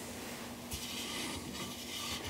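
Quiet rubbing and handling noise of hands on a speaker's frame, over a faint steady hum.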